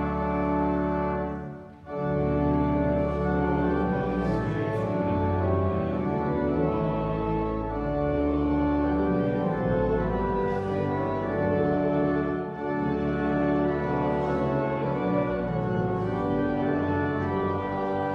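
Church organ playing a hymn in held chords, with a short break about two seconds in between phrases.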